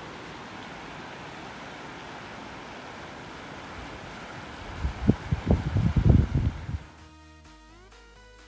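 Steady rushing of a fast-flowing river current. About five seconds in, roughly two seconds of loud, low buffeting from wind on the microphone; background music starts near the end.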